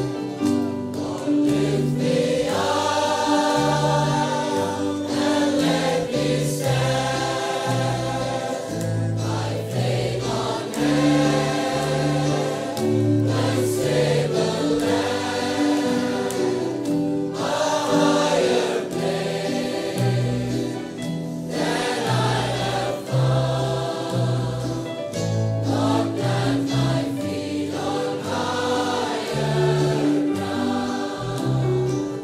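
A choir singing a gospel worship song, held notes changing every second or so over a low instrumental backing.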